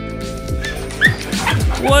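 A large yellow Labrador-type dog barking, a few short barks about half a second apart, over background music.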